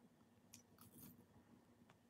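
Near silence, with a few faint clicks and a brief scrape as metal rhinestone jewelry pieces are handled with needle-nose pliers.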